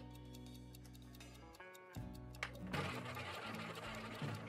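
Background music with held low notes. About two and a half seconds in comes a sharp click, then a fast rattling whir of a roulette ball spinning around the wheel's track.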